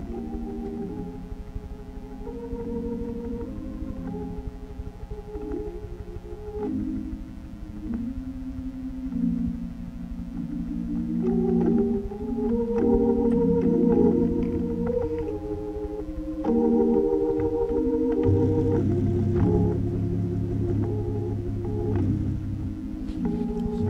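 Organ playing slow, sustained chords, swelling louder about halfway through, with low bass notes added near the end.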